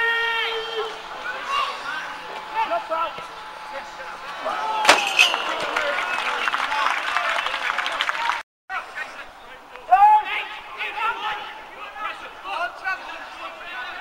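Shouts and calls of players and spectators on a football pitch during open play, with one sharp thud about five seconds in. The sound drops out briefly just after eight seconds.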